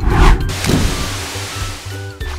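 A whoosh sound effect: a loud rush of noise that starts suddenly, sweeps down in pitch in its first moments and hisses on for over a second, covering the background music.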